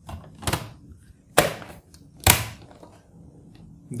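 HP ProBook 6470b laptop's bottom service cover being slid back on and snapped into place: three sharp clicks about a second apart, with a few fainter knocks between them.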